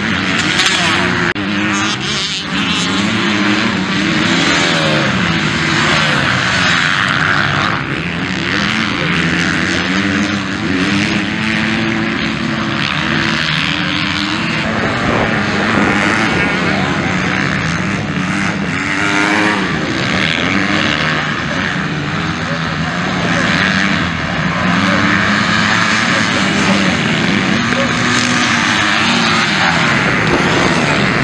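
Several motocross dirt bike engines racing together, revving up and down as riders accelerate and shift through the corners, loud and continuous.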